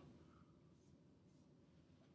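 Near silence, with a few faint strokes of a dry-erase marker on a whiteboard.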